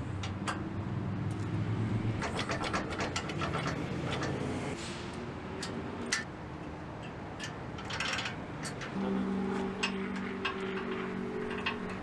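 A vehicle engine running steadily, a low hum that takes a higher pitch about nine seconds in, under scattered light metallic clicks and clinks of steel hitch pins, clevises and chain being handled at a trailer-hitch receiver.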